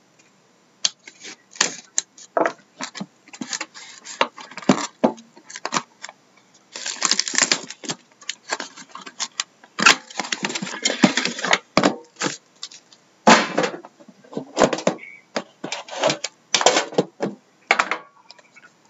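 Plastic shrink wrap on sealed hockey card hobby boxes crinkling and crackling in irregular bursts as the boxes are handled and pulled apart, with denser stretches of rustling.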